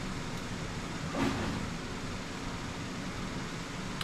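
Steady low hum and hiss of room background noise, with one brief soft sound about a second in.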